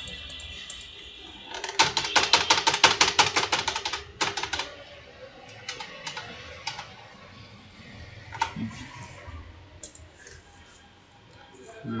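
Computer keyboard typing: a quick run of keystrokes for about two seconds, starting a couple of seconds in, then a few scattered single clicks.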